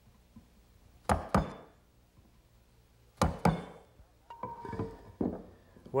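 A three-quarter-inch bench chisel chopping down into the corners of a mortise in teak: two pairs of sharp knocks, about two seconds apart, then a few lighter knocks and a brief clink near the end.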